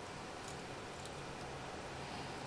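Faint steady hiss with a low hum, the background noise of an open broadcast audio line, with no distinct event.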